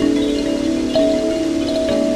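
Kalimba in a minor key, its plucked metal tines ringing through light-controlled delay effects. The repeats pile up into overlapping, sustained notes, with fresh plucks about a second in and near the end.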